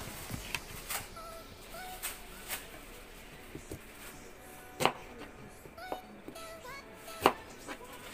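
Kitchen knife knocking on a cutting board while slicing a white onion: a few scattered sharp knocks, the two loudest about five and seven seconds in, over faint background music.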